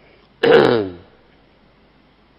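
A man clears his throat once, about half a second in: a short, loud, voiced burst that falls in pitch.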